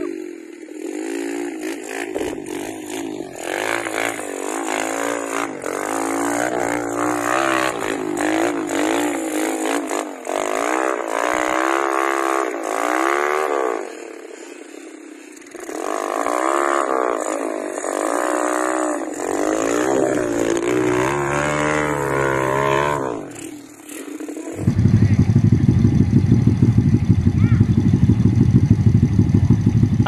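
Dirt bike engine revved hard again and again, its pitch rising and falling with the throttle, as the bike is worked up a steep grassy hill climb. About 24 seconds in the sound cuts abruptly to something louder and steadier.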